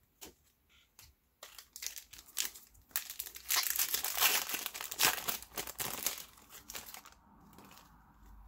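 A trading-card pack's foil wrapper being torn open and crumpled by hand. A crackling starts about a second and a half in, is loudest in the middle and fades near the end.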